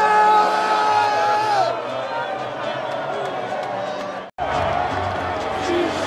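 Stadium crowd of football fans cheering and chanting, with a long held note from many voices near the start. The sound drops out for a split second about four seconds in, and a different crowd recording follows.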